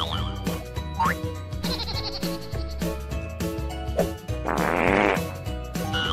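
A cartoon fart sound effect, one buzzy burst of a bit under a second about two-thirds of the way through, over steady background music. A short rising whistle-like glide comes about a second in.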